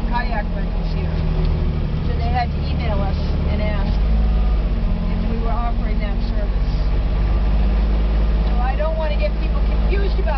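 Kubota utility vehicle's engine running steadily as it drives slowly along a paved path, a low, even drone. Voices are heard faintly over it now and then.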